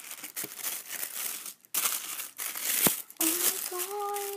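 White tissue paper crinkling and rustling as it is pulled back inside a cardboard box, in loud bursts with a couple of short breaks. Near the end a girl's voice starts a drawn-out exclamation.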